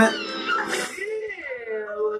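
A cartoon-style voice from the playing YouTube Poop edit, drawn out and sliding up and down in pitch.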